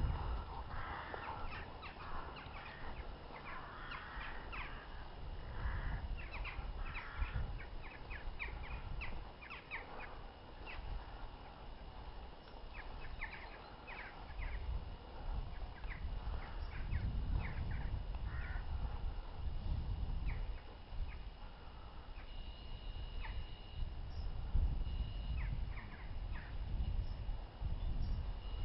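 Birds calling again and again, many short calls, over a low rumble that comes and goes.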